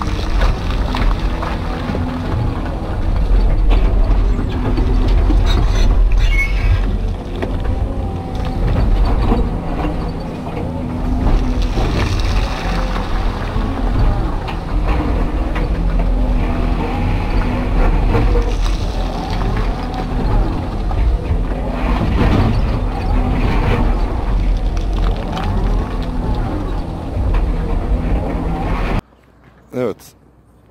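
Hydraulic excavator's diesel engine and hydraulics running under load, heard from inside the operator's cab, swelling and easing as the boom and bucket work, with occasional knocks of the bucket on rock. Near the end it cuts off suddenly to much quieter outdoor sound.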